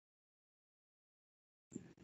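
Near silence: the call audio drops out completely, then a faint, brief, low sound comes in near the end.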